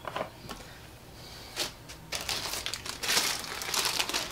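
Clear plastic zip-lock bag crinkling as it is handled, starting about two seconds in after a quiet start, with a single short tap a little before.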